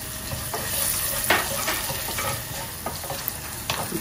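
Green chillies, curry leaves and dried red chillies sizzling in hot coconut oil in a small nonstick saucepan: the tempering for moru curry. A wooden spatula stirs them, scraping and tapping against the pan now and then.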